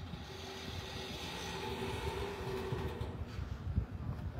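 Street traffic: a vehicle engine running with a steady hum that swells in the middle, while wind buffets the microphone in low gusts.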